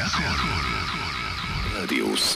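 Demodulated audio of a pirate FM station on 87.9 MHz, received on a software defined radio: electronic music with gliding, voice-like sounds, leading into the station's spoken jingle.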